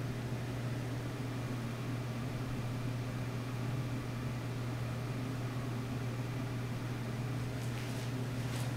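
A steady low hum with a faint hiss, unchanging throughout.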